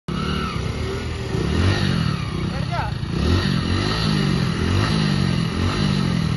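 Hero Splendor motorcycle engines revving under load, the engine note rising and falling every second or so as the two rope-tied bikes pull against each other.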